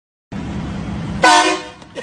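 A single short car horn honk just over a second in, over a steady background hum.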